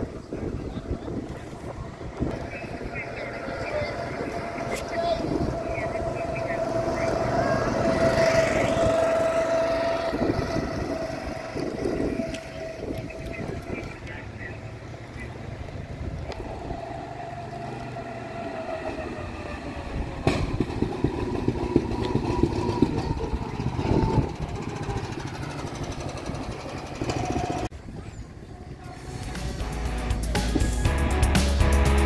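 Go-kart engines running on the track, one kart's engine note swelling about eight to ten seconds in as it passes, then fading.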